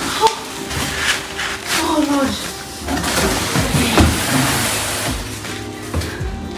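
Plastic and bubble wrap rustling and crinkling, with several knocks and scrapes, as a wrapped bar trolley is handled and lifted out of its cardboard box, over background music.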